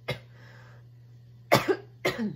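A woman coughing: a short cough right at the start and a louder one about a second and a half in. It is her lingering COVID cough.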